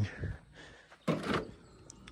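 A man's voice: the tail of a spoken phrase, then a single short word about a second in, with low background noise between.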